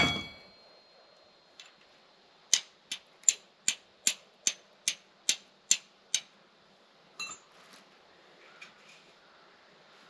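Flint struck against a carbon-steel striker about ten times in quick, even succession, about two and a half strikes a second, throwing sparks onto char cloth in a tin. The strikes are preceded by a ringing metal clink.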